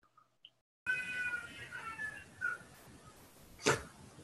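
A high-pitched, drawn-out wavering cry, like an animal's call, slowly falling in pitch over a microphone's hiss, starting about a second in; near the end a short burst of noise.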